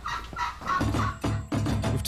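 A chicken calling near the start, then background music with a steady low bass line coming in about a second in.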